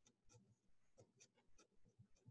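Faint pen strokes on paper, a series of short soft scratches as a word is written, barely above silence.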